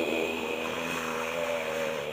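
A steady, level drone with several evenly spaced overtones from a film's soundtrack, heard off a television, cutting off just after the end.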